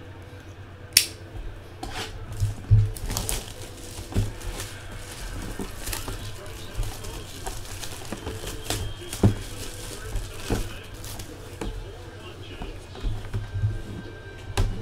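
Plastic shrink wrap crinkling and tearing as it is stripped off a cardboard box, with several sharp clicks and taps from the box being handled.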